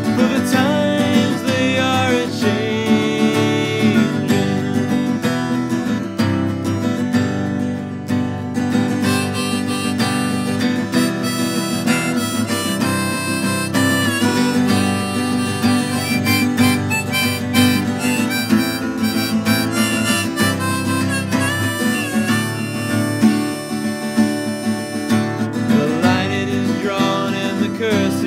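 Harmonica in a neck rack playing an instrumental break over a strummed acoustic guitar, in a folk song.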